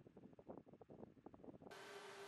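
Near silence: faint room tone, with a faint steady hiss and a low hum coming in near the end.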